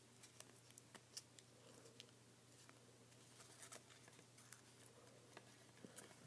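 Very faint, scattered small clicks and rustles of a folded paper model being pressed and tucked between the fingers, over near-silent room tone.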